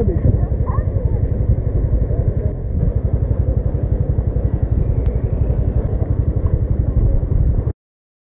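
Small motor scooter engine idling at a standstill, a dense low putter close to the helmet microphone, cutting off suddenly near the end.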